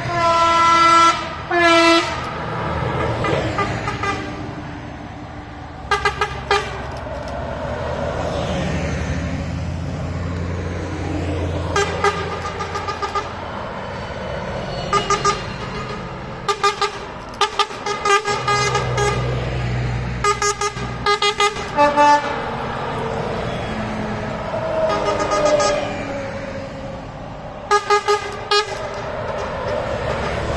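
Karosa 700-series buses driving past one after another, their engines rising and fading with each pass, while horns sound again and again in clusters of short toots.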